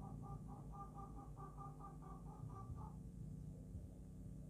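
Faint animal calls: a fast run of short, repeated notes at two pitches, about six or seven a second, stopping about three seconds in, over a low steady hum.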